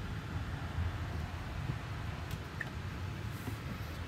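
Steady low rumble and hiss inside the cabin of a 2023 Tesla Model Y rolling slowly, with the climate fan running.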